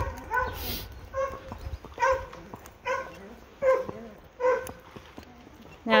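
A dog barking steadily: short barks of much the same pitch, about one a second.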